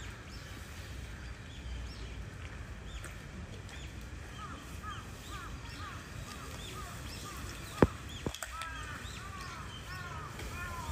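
Birds chirping over a low outdoor rumble: many short, repeated calls that grow more frequent in the second half. A single sharp click, the loudest sound, comes near the end, with a softer one just after.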